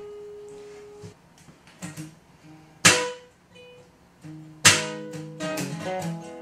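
Solo acoustic guitar with a capo, played live. A held chord rings out and fades, a few soft picked notes follow, then two sharp strummed chords come about three and five seconds in, and the strumming picks up near the end.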